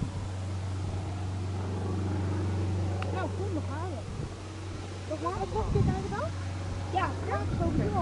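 Boeing 787-8 Dreamliner's engines running at low taxi power as the airliner rolls along the runway after landing: a steady low hum that swells and then fades about four seconds in. People talk close to the microphone from about three seconds in.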